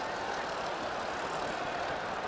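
Steady background noise of a large stadium crowd during a football match, heard through television broadcast sound.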